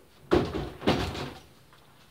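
Two hollow knocks about half a second apart as a small CRT television with a plastic cabinet is handled and set on a tiled floor.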